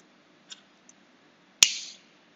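A hand-held gas lighter sparked with one sharp click and a short, fading hiss of gas as it catches and lights a candle wick. Two faint handling clicks come before it.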